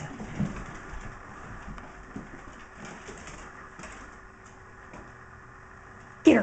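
Scottish terriers at play: short, low grumbling growls, the loudest about half a second in, with a few softer ones after.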